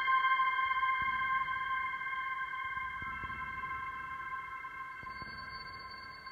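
Generative ambient synthesizer music from a Moog Subharmonicon and eurorack modules, its notes driven by a Pilea peperomioides plant's biodata through an Instruo Scion module. Several steady high-mid tones are held together and slowly fade, with new tones joining about halfway and near the end, over faint soft low pulses about every two seconds.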